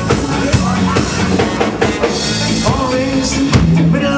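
Live ska band playing: a drum kit keeps the beat under electric guitar, with saxophone and trombone in the band.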